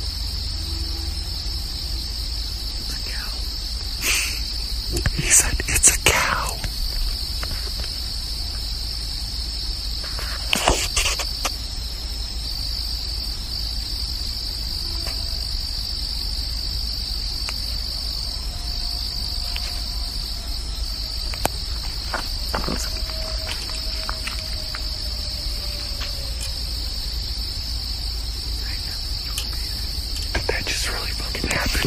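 Steady, high insect chorus of night insects, recorded outdoors on a phone. A few short rustling or handling noises come at about four to six seconds in and again around ten seconds. Faint, drawn-out, slightly falling tones of unclear source sound in the second half.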